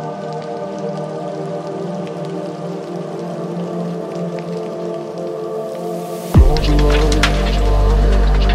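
Deep chill electronic music. A held synth pad chord plays over a soft crackling texture, then about six seconds in a deep bass and drums come in, much louder.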